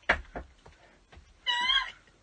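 A person laughing: two short gasping bursts, then a single high-pitched wavering squeal of about a third of a second near the end that sounds much like a meow.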